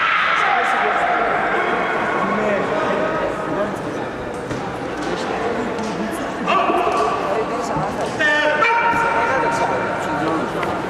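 People shouting and calling out in a large, echoing sports hall. Two long, drawn-out calls come about six and a half seconds in and again near the end, with scattered sharp knocks in between.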